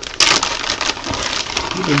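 Plastic packaging bag crinkling and rustling as it is handled, with small clicks, starting a moment in.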